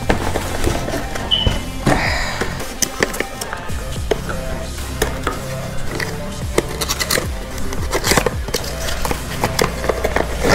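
Cardboard packaging being handled: rustling, scraping and light knocks as a boxed item is shifted inside a cardboard carton, with background music underneath.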